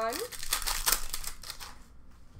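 Upper Deck hockey card packs and cards being handled, a burst of crinkling and rustling lasting about a second and a half, then fading out.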